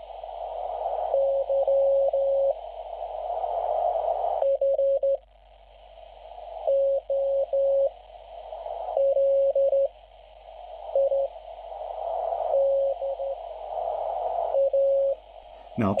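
A Morse code (CW) signal coming from the speaker of a Chinese uSDX/uSDR QRP SDR transceiver tuned to 40 m: a steady tone near 550 Hz keyed in dots and dashes. Behind it is receiver hiss that swells back up in each gap between characters. The owner finds the audio on this radio horrible and scratchy.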